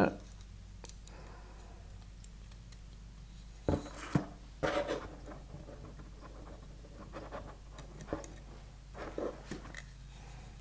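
Handling noise from a wooden frame saw being worked with the hands over its cardboard box: scattered light clicks, knocks and scratches, with a few sharper knocks around four to five seconds in and a faint low hum underneath.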